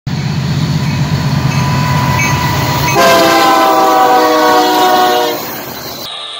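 Union Pacific diesel freight locomotives passing with a steady low engine rumble. About three seconds in, the lead locomotive sounds its air horn in one long chord of several tones, which fades out at about five and a half seconds.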